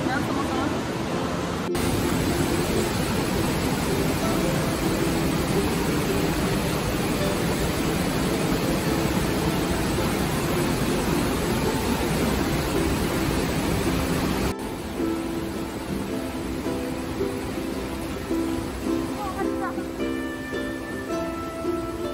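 Loud, steady rush of a mountain torrent and falling water in a narrow rock gorge, with ukulele music underneath. About fourteen seconds in, the water noise drops abruptly and the music comes forward.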